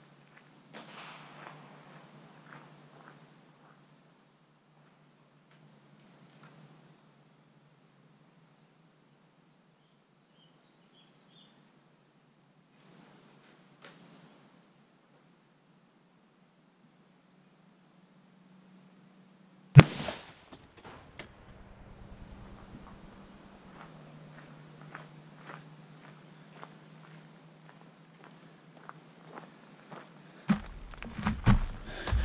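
A single 6.5 Creedmoor rifle shot with the high-velocity load, about two-thirds of the way in, heard from beside the ballistics gel block it strikes: one sharp crack with a short echo. Before and after it there is only faint outdoor sound with a few small ticks.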